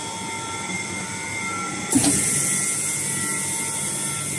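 Double-chamber vacuum packaging machine running with a steady mechanical hum. About two seconds in, a knock as the stainless-steel lid comes down onto the chamber, then at once a steady high hiss as air is drawn out of the chamber to start the vacuum cycle.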